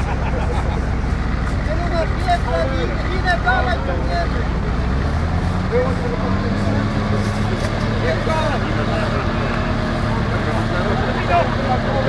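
Engine of a Volvo BV202 tracked over-snow carrier running under load as the vehicle crawls through a muddy pond; about five seconds in the engine revs up and holds the higher speed.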